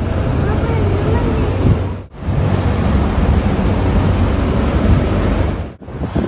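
Steady outdoor noise dominated by wind on the microphone, with faint voices. The sound drops out for a moment about two seconds in and again near the end, where the clips are cut.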